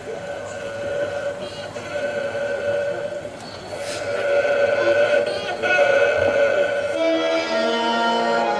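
Accordion holding sustained notes, then moving into a melody of changing notes about seven seconds in.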